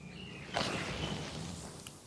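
Quiet room tone, with a soft rustle about half a second in that fades away and a faint click near the end.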